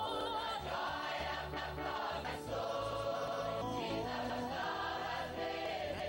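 Choir singing a gospel worship song in held, wavering notes over instrumental accompaniment with a steady bass line.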